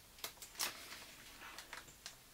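A clear plastic resealable bag being pulled open by hand: faint crinkling of the plastic with a few small sharp clicks.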